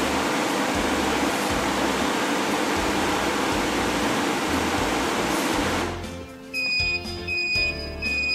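Fieldpiece MR45 refrigerant recovery machine running in self-purge, a steady loud rushing noise that cuts off suddenly about six seconds in. Its alarm then starts beeping in a repeating high-pitched pattern, signalling that the purge is finished and the recovery is done.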